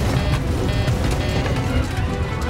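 Dramatic music over the heavy rumble of a propeller airliner in flight, with repeated rattling knocks as the aircraft shakes out of control.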